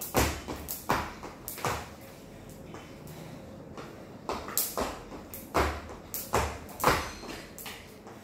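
Skipping rope in use on a hard tiled floor: sharp slaps of the rope and thuds of landing feet. There are three strokes, a pause of about two seconds, then a faster run of about seven strokes.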